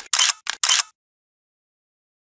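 A quick run of camera shutter clicks, about four a second, that stops just under a second in.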